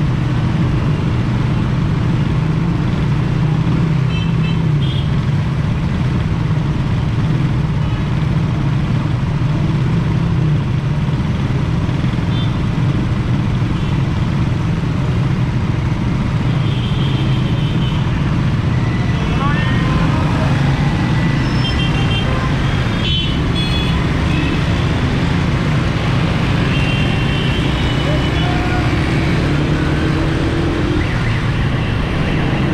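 Motorcycle engines idling in stopped traffic, a steady low hum, with short horn toots from other vehicles now and then. Near the end an engine rises in pitch as the traffic pulls away.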